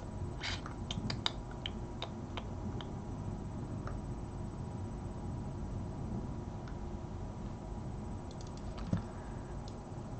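Scattered light clicks of a computer keyboard, most in the first three seconds and a few more near the end, over a faint steady hum.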